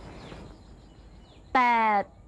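Low outdoor background with a few faint bird chirps, then a woman's single drawn-out spoken word, falling in pitch, near the end.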